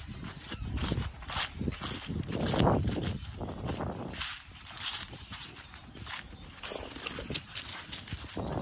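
Irregular footsteps crunching and rustling through dry fallen leaves on grass, with a louder burst about two and a half seconds in.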